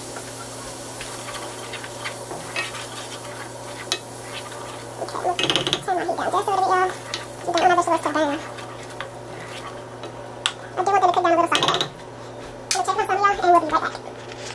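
A wooden spoon stirs and scrapes vegetables sautéing in a nonstick skillet, with a light sizzle and small taps of the spoon on the pan. A person's voice comes in several times in the second half and is the loudest sound.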